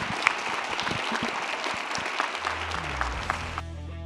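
Audience applauding, a dense patter of clapping hands. Near the end the clapping cuts off as music comes in.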